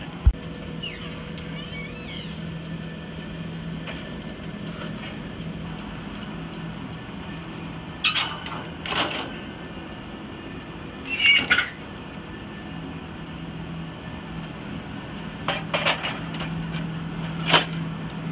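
Knocks and clacks of a Kodak NexPress toner replenisher unit being handled and fitted into the press, a few scattered hits with the loudest near the end, over a steady low machine hum.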